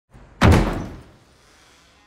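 A door banging shut once, about half a second in, its sound dying away in a short echo off the hard tiled walls of a restroom.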